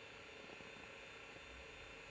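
Near silence: a faint, steady hiss from a blank recording.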